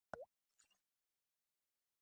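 A single short water-drop 'plop' sound effect, a quick pitch swoop down and back up, right at the start.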